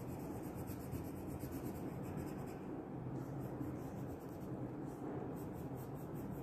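Crayon scribbling on a sheet of paper while colouring in, a steady scratching made of quick back-and-forth strokes.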